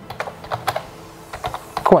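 Computer keyboard keystrokes: a quick, uneven run of key clicks as a word is typed out.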